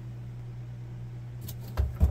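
Handling noise: two dull thumps and a few light knocks near the end as a doll is pushed up against the camera's microphone, over a steady low hum.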